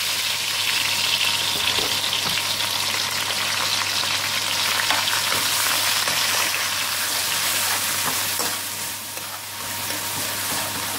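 Grated ginger and garlic sizzling steadily in hot ghee in a metal wok, with a spatula stirring and scraping against the pan in small clicks.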